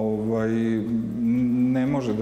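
A man's voice holding one long drawn-out hesitation vowel, a steady hum-like 'eeeh' at nearly one pitch, shifting slightly about halfway through.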